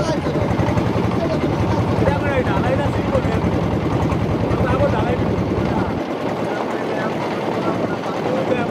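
Boat engine running with a fast, steady pulsing, heard from on board as the boat moves along the river; voices talk over it. About six seconds in, the deepest part of the engine sound drops away.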